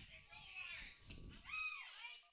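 Dial-up modem handshake sample playing faintly: warbling tones and noise, with a tone that rises and falls near the end.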